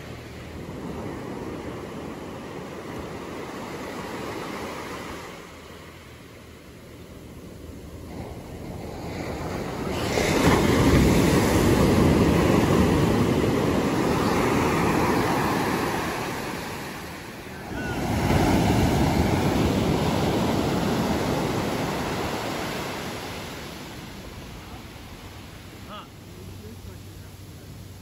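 Ocean surf breaking and washing up a sandy beach, a continuous rush that swells loudest twice: from about ten seconds in, and again from about eighteen seconds in.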